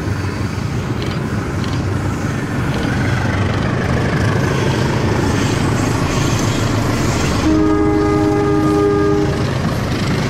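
CC 201 diesel-electric locomotive hauling a Kirow rail crane train passes close, its engine and wheels rumbling steadily and growing louder. About seven and a half seconds in it sounds its horn, one chord of several notes lasting about two seconds.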